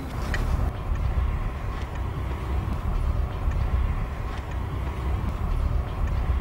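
Steady low rumble with a light hiss: outdoor background noise with no distinct events.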